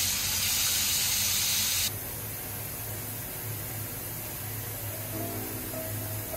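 Bath tap running full, a stream of water pouring into a large bathtub with a loud steady hiss. About two seconds in it drops abruptly to a quieter pouring into the filled tub.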